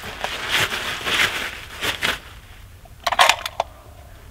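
Rustling and handling noise as a shooter settles in behind a rifle on a rock rest. A short cluster of sharp clicks and knocks comes about three seconds in.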